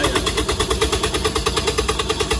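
A running engine making a loud, steady rhythmic pulse of about ten beats a second over a droning tone.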